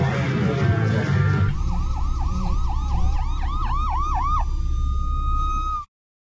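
The song's music stops about a second and a half in and a siren takes over, yelping in fast repeated sweeps, several a second, over a low steady rumble. It then holds a single steady high tone before everything cuts off abruptly near the end.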